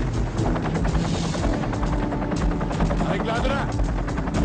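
Film soundtrack mix: music with a steady low bed, under a dense run of sharp cracks, and a brief wavering voice a little past three seconds in.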